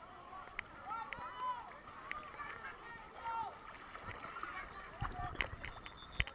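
Faint, distant voices of people calling out around a swimming pool. About five seconds in come water sloshing and splashing against a waterproof camera held at the surface, with a low rumble and sharp clicks.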